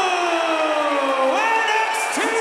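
A man's long drawn-out yell, sliding slowly down in pitch, then breaking into a second, rising shout about a second and a half in, over arena crowd noise.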